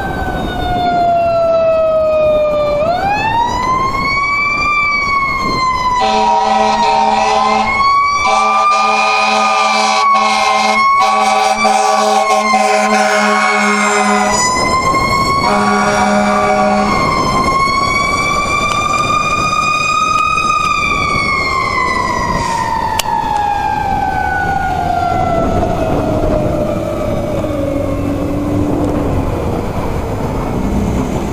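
Fire engine siren wailing. It dips, winds up sharply about three seconds in and holds a high, wavering pitch, then winds slowly down over the last ten seconds. Steady air horn blasts sound over it, a long one from about six to fourteen seconds and a short one just after fifteen seconds, as the engine passes close by.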